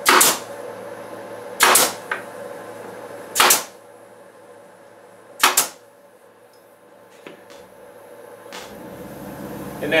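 Pneumatic nail gun firing four times, about two seconds apart, each shot a sharp crack with a short puff of air, driving nails into a pine frame.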